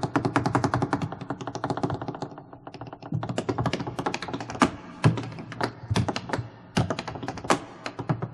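Tap shoes striking a stage floor in fast, irregular runs of taps. The taps thin out briefly about two to three seconds in, and a couple of heavier accented strikes come around the middle.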